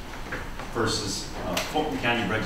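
A man speaking, starting just under a second in, with a brief sharp knock near the end.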